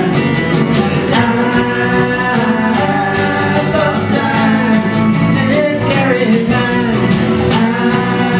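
Live folk song: two acoustic guitars strummed in a steady rhythm, with men singing the melody over them.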